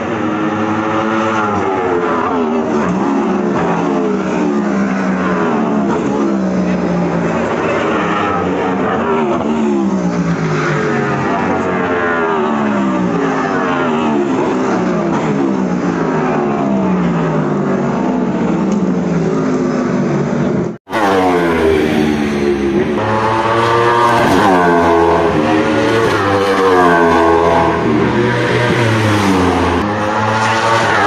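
Several race cars passing at speed on a street circuit, their engine notes overlapping and repeatedly rising and falling in pitch as they come by, with a brief break in the sound about two-thirds of the way through.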